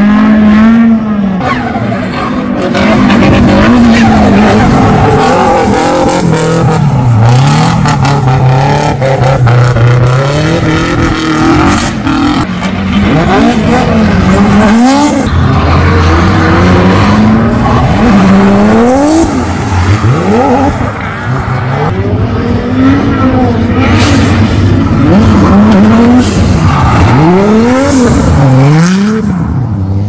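Drift cars' engines revving hard and dropping back again and again as the throttle is worked through a slide, sometimes with more than one car heard at once, over tyre squeal and skidding noise.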